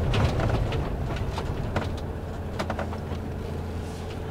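Motorhome driving slowly over a rough, wet estate road, heard from inside the cab: a steady low engine and road rumble with scattered short clicks and rattles.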